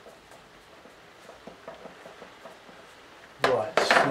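Faint soft taps and brushing of a flat paintbrush dabbing paint onto watercolour paper in a quiet small room. Near the end comes a short, loud burst of noise together with the voice starting up.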